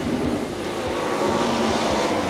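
Race car engines running hard, a dense, steady mechanical noise.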